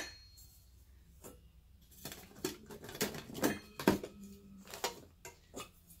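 Light, irregular clinks and knocks of metal cookware with cloth rustling as a bandana is pushed down into a metal pot and strainer. The first two seconds are nearly silent, then about a dozen small taps come over the last four seconds.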